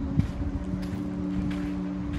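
Wind rumbling on the microphone, with steady low humming tones underneath, while someone walks on gravel, steps falling about every half second and the clearest a thump about a fifth of a second in.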